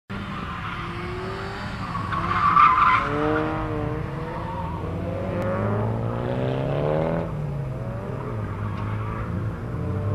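Car engine revving up and down, heard from inside the open cockpit of a roadster, with a loud burst of tyre squeal about two to three seconds in.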